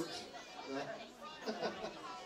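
Speech with background chatter: a man's voice says a short word amid talk in a large room, with no music playing.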